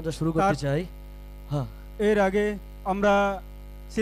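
A man's voice through a stage microphone and PA in several short phrases, some notes held, with pauses between them. A steady low mains hum from the sound system runs underneath.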